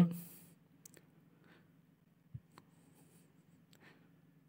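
The tail of a narrator's word, then near silence: a faint steady low hum of the recording room with a few faint, short clicks scattered through it.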